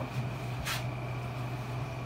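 Steady low room hum, with one short soft hiss about a third of the way in.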